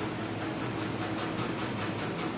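Steady mechanical hum with an even hiss underneath: the background running noise of the knitting workshop's machinery.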